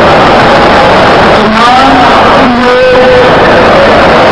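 A man's voice over a public-address system, nearly buried under loud, steady rushing noise. The voice comes through faintly between about one and a half and three seconds in.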